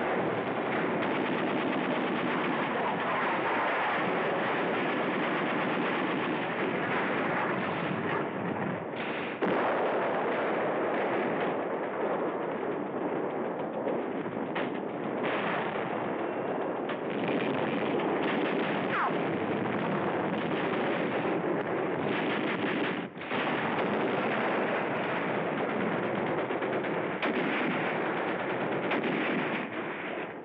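Sustained battle gunfire, with machine-gun fire and rifle shots running together into a steady din, broken by a few sharp cracks and a brief lull about 23 seconds in.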